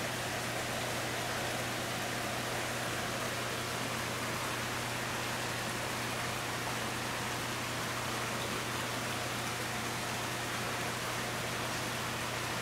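Steady hissing noise with a constant low hum underneath, unchanging throughout.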